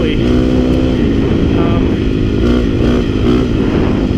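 KTM 350 XC-F's single-cylinder four-stroke engine running steadily under way on a dirt trail, its pitch shifting up and down a few times with the throttle. Heavy low rumble from wind and the ride lies under it.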